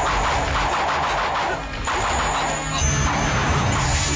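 Fight-scene sound effects from a TV action drama: a run of loud crashing impacts and blasts, broken briefly a little under two seconds in, with music underneath.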